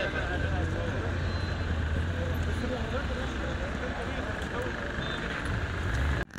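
Outdoor street background: a steady low traffic rumble with indistinct voices talking.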